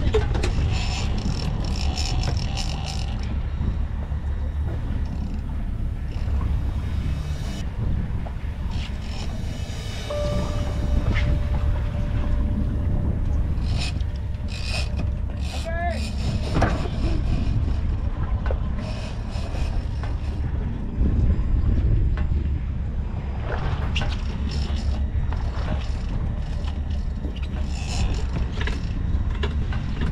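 Boat engine running with wind rumbling on the microphone as the center-console boat is manoeuvred during the fight.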